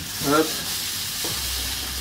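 Whole prawns sizzling steadily as they fry in hot oil in a frying pan while they are turned.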